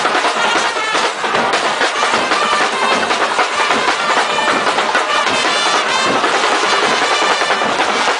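Loud brass-and-drum band music: horns play pitched lines over a steady, regular drum beat.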